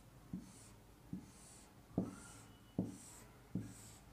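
Felt-tip marker drawing hatching lines on a whiteboard: five quick strokes, about one every 0.8 seconds. Each stroke is a light tap of the tip followed by a brief soft scratch.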